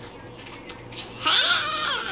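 A child's high-pitched, drawn-out squeal made as a silly noise. It starts a little after a second in and falls in pitch at the end.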